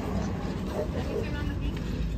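Faint voices over a steady low rumble of outdoor background noise.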